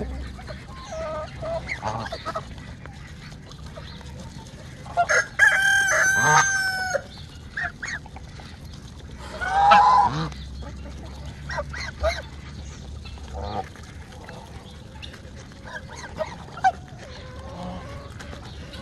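Domestic geese feeding together, giving short honks and calls, with one loud honk about ten seconds in. About five seconds in, a rooster crows for roughly two seconds.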